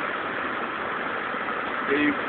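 Steady road and engine noise of a slowly moving car, heard from inside the cabin.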